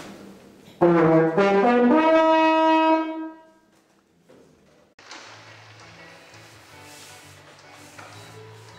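Brass instruments play a short fanfare that climbs in steps and ends on a held note, fading out about three and a half seconds in. After a brief pause, soft music with low sustained notes begins about five seconds in.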